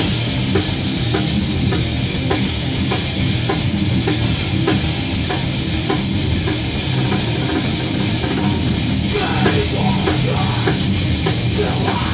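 A rock band playing live in a small room: drum kit with cymbals and electric guitar, loud and dense, kicking in all together right at the start and driving on in an instrumental passage without singing.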